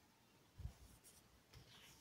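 Near silence, with faint stirring of a silicone spatula in a plastic jug of liquid detergent: two soft low knocks, about half a second and a second and a half in.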